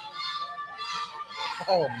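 Faint distant voices over room noise in a hall, then a man exclaims "Oh" near the end.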